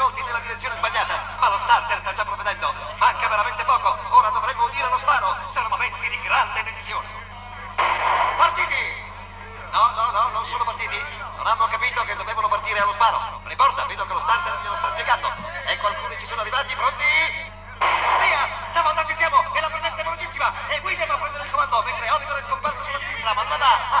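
Several men's voices chattering and exclaiming over one another, with brief lulls, over a steady low hum.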